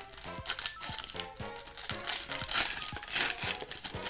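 Shiny plastic wrapper of a Yu-Gi-Oh! Turbo Pack booster pack being torn open and handled, a quick run of sharp crinkles and crackles. Faint background music plays underneath.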